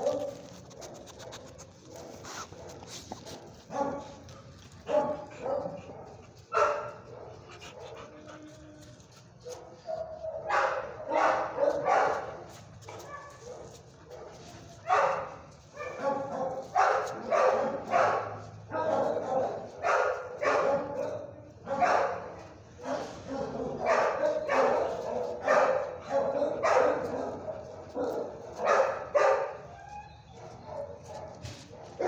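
Dogs barking in short, repeated bursts, sparse at first and coming thick and fast from about ten seconds in.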